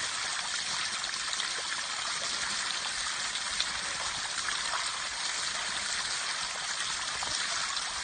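Water overflowing a reservoir dam, a steady rushing hiss that holds unchanged throughout.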